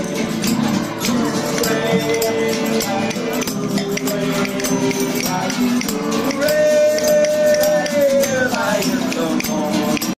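Several acoustic guitars strummed together in a steady rhythm, with a man singing a folk-style song in long held notes and a small shaker rattling along with the beat.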